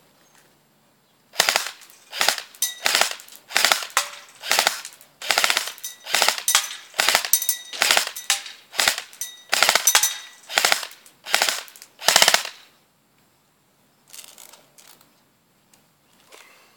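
M16-style airsoft electric gun firing on full automatic in a string of short bursts, one or two a second for about eleven seconds, each burst a quick rattle of shots. A few faint clicks follow near the end.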